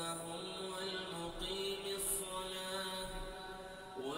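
A man's voice reciting the Qur'an in long, drawn-out melodic phrases, holding each note for a second or more.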